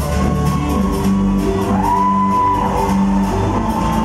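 Live pop band playing on stage with bass, drums and guitar, a long high note held for about a second in the middle.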